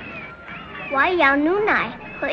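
A young girl speaking a short phrase in Chinese in a high voice with sliding pitch, starting about a second in.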